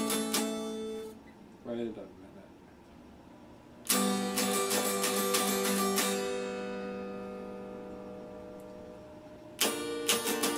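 Electric guitar strummed in quick chords that stop about a second in. After a pause the strumming starts again around four seconds in, then one chord is left ringing and slowly fading until quick strumming resumes near the end.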